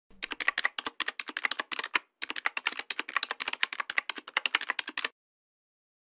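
Rapid keyboard typing sound effect of many quick keystrokes, about ten a second, with a brief break about two seconds in. It stops abruptly about five seconds in.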